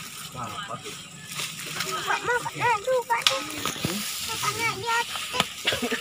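Indistinct voices of several people talking and calling out, with a few sharp knocks and scuffs among them.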